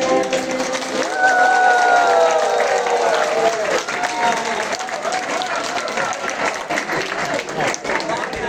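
Audience applause, a dense patter of clapping, with a voice calling out in a long rising-and-falling cry from about one second in.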